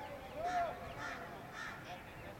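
A bird calling three times, with short harsh calls about half a second apart; the first is the loudest.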